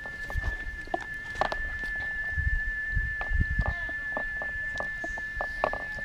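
A jar rolling out roti dough on a plastic cutting board, giving scattered light knocks and rubbing, over a steady thin high tone.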